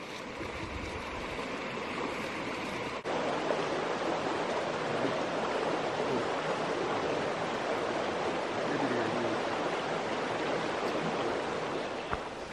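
A shallow forest creek flowing, a steady rush of running water, a little louder after a short break about three seconds in.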